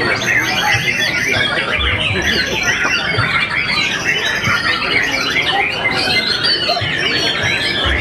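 Many white-rumped shamas (murai batu) singing at once, a dense, unbroken chorus of fast whistled and chattering phrases.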